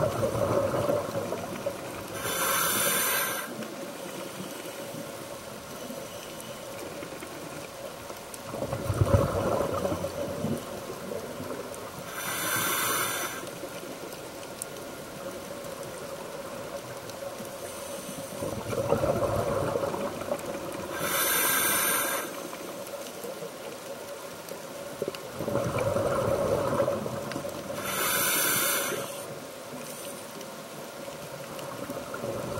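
Scuba diver breathing through a regulator, heard underwater: short hissing inhalations alternating with rumbling bursts of exhaled bubbles, four breaths, roughly one every nine seconds.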